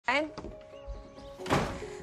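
A door thuds shut about one and a half seconds in, over soft, steady background music.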